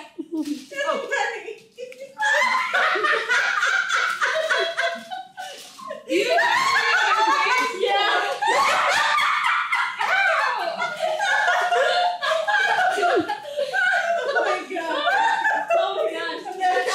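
Several people laughing and talking over one another, with short lulls about two and six seconds in.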